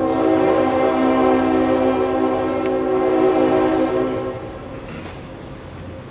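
Train horn sounding, one steady chord of several tones held for about four seconds before it fades, followed by the lower rumble of rail traffic.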